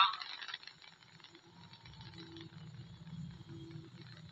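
Faint low rumble of the LVM3 rocket's twin S200 solid boosters burning during ascent, building up about a second and a half in.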